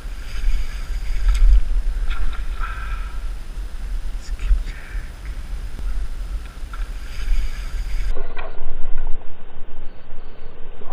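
Wind buffeting an outdoor microphone with a heavy low rumble, with a few brief faint clicks and splashes. About eight seconds in, the sound switches abruptly to a duller, muffled recording.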